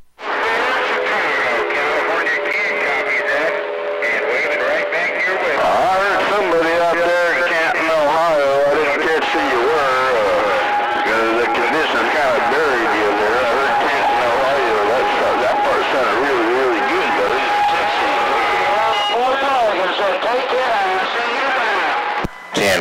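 CB radio receiver audio: several garbled, overlapping voices from distant skip stations, too distorted and warbly to make out, with a steady whistle of a carrier tone running through the middle. The band is crowded and noisy with long-distance skip.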